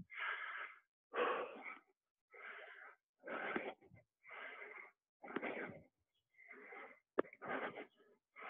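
A man breathing hard from exertion while doing push-ups: about eight rushing breaths, evenly paced at roughly one a second, keeping time with the reps.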